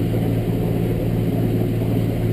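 Suzuki DF300 V6 four-stroke outboard running at a steady low throttle as the boat cruises, heard from inside the enclosed cabin as an even low hum with water noise from the hull.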